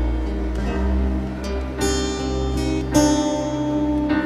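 Instrumental introduction of a church hymn: acoustic guitar strumming over a held bass line, with a fresh chord about two seconds in and another about three seconds in.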